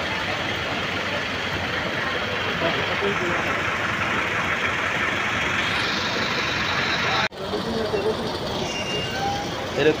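Steady noise of traffic on a flooded road, with vehicles idling and moving through standing water. The sound cuts out suddenly for a moment about seven seconds in, and faint voices come in after it.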